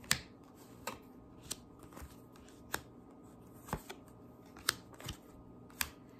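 Tarot cards being handled and laid out: a series of about eight sharp, light clicks and snaps at irregular intervals.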